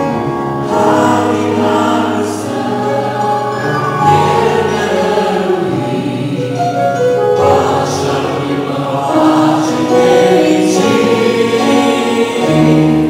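Many voices singing a gospel hymn together, holding long sustained notes over a low held part.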